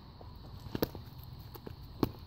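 A few light scuffs and taps of sneakers shifting on gravelly asphalt, about a second in and again near the end, over a low outdoor rumble.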